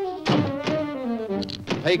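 A cartoon sound-effect thunk as a window is shut, over an orchestral music score and a radio announcer's voice.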